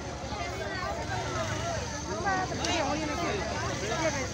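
Several people's voices overlapping over a low steady rumble.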